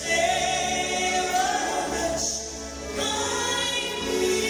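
Gospel music: a woman singing long held notes into a microphone.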